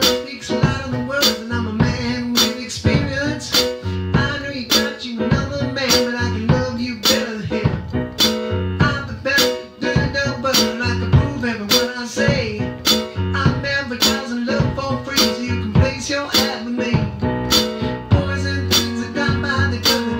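Instrumental break of a funk-rock song: a digital stage piano played over a steady drum beat, with no singing.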